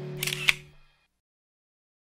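Background music ending on a held chord that fades out within the first second. Over it comes a camera-shutter click effect, a quick sharp click about half a second in, and then silence.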